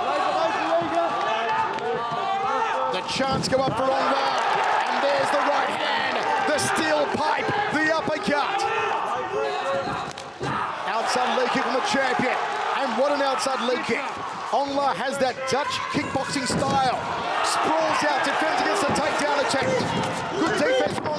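Voices shouting from ringside, over the sharp slaps and thuds of punches and kicks landing and feet on the mat during an MMA bout.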